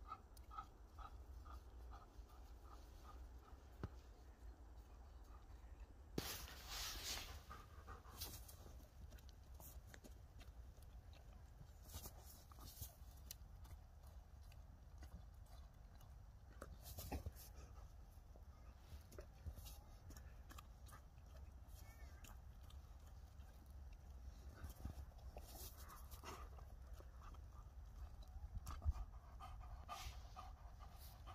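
Faint panting of a Doberman resting after play, under a low steady rumble. A brief louder noise comes about six seconds in.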